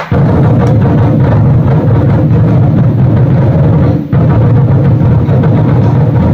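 Ensemble of Vietnamese barrel drums (trống) played hard in a fast, continuous roll for an opening drum performance, with a very brief break about four seconds in.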